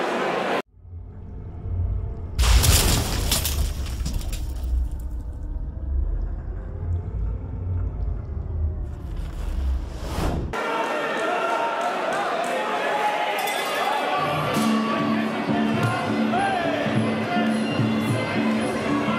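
Produced title-card sound effect: a deep rumbling bed with a loud crash, like stone shattering, about two and a half seconds in, ending abruptly about ten seconds in. It cuts to the noise of a busy fight hall, where music with a pulsing tone starts about fourteen seconds in.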